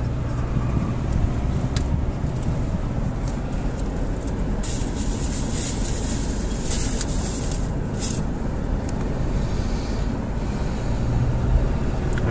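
Steady road and engine noise of a car driving at low speed, heard from inside the cabin. A stretch of louder hiss runs from about four and a half to eight seconds in.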